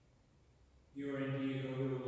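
A priest's voice starts chanting about a second in, intoning liturgical text on a steady, almost held pitch.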